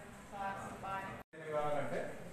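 Speech: a voice talking in a room, broken by a sudden, very short dropout to silence just after halfway.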